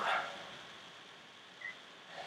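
A woman's loud, drawn-out "whew" of relief after exertion, a gliding voiced exhale at the very start that trails off into breath. Then quiet room tone, broken by a brief faint high squeak near the end.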